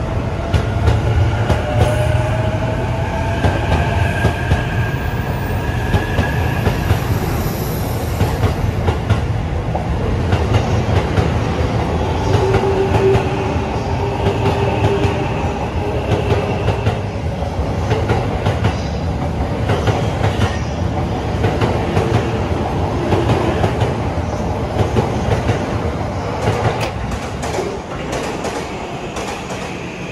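JR East E531 series electric commuter train pulling out and gathering speed past the platform. Its motors whine, rising in pitch over the first several seconds, while the wheels clatter steadily over rail joints. The noise fades near the end as the last car goes by.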